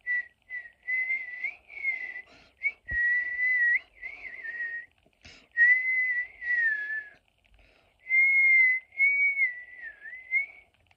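A person whistling through pursed lips, a wandering tune in short phrases with brief pauses between them, the pitch wobbling up and down.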